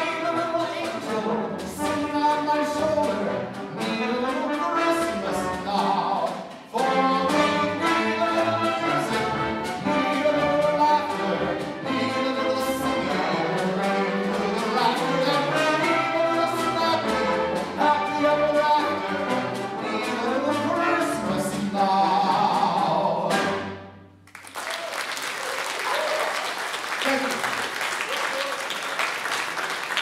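Symphony orchestra with brass and strings playing a lively closing passage that ends abruptly on a final chord about 24 seconds in, followed by audience applause.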